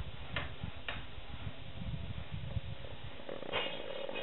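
Distant hammer strikes on building work: three sharp knocks about half a second apart near the start, over a low, uneven rumble. A louder sound with a pitched edge comes in shortly before the end.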